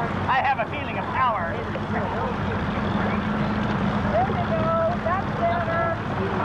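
A small boat motor running steadily as a low hum, with people's voices and calls over it.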